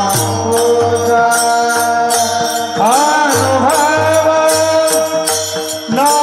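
A group of men singing a devotional kirtan chant together, keeping a steady rhythm on brass hand cymbals (taal), with a low repeated beat beneath. About halfway through the voices glide up into a new held note.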